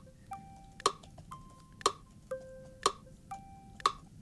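Ticking at an even one tick a second, with a short pitched note of a different pitch between each pair of ticks, like a ticking-clock music cue.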